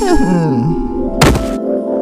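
Cartoon sound effects over music: a wobbling, gliding vocal groan, then a single sharp thunk a little over a second in, over a held musical chord.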